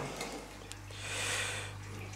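Quiet room with a low steady hum; a faint click about two-thirds of a second in and a soft hiss in the middle as a small aquarium flow pump and its cable are handled.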